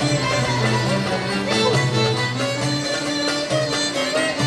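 Gharnati (Andalusian-Moroccan) ensemble playing an instrumental passage, bowed strings carrying the melody over a lower line that moves note by note.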